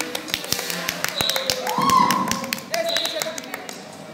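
A quick run of irregular taps, thinning out in the second half, with voices faintly behind.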